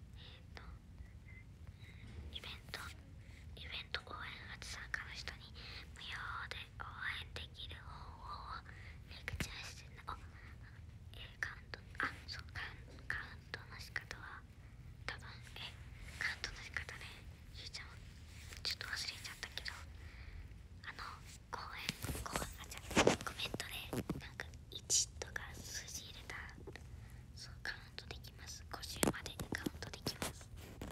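A woman whispering and talking softly, with scattered light clicks and rustles over a steady low hum. The loudest stretch comes a little past two-thirds of the way through.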